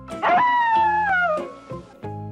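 A single long howl-like cry, falling steadily in pitch and fading after about a second and a half, over background music.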